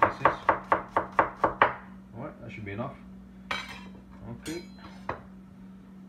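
Chef's knife slicing a red onion on a bamboo cutting board: about eight quick chops in the first second and a half. After that come two scrapes, the second with a short metallic ring, as the knife is moved and laid down on the board.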